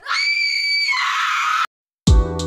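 A high-pitched scream, one held note that turns rougher and drops lower about a second in, then cuts off suddenly.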